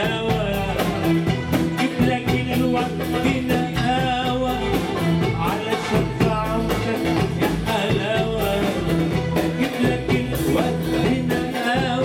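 Live Arabic band music: a male singer singing a wavering, ornamented melody into a microphone over electronic keyboards and a steady percussion rhythm.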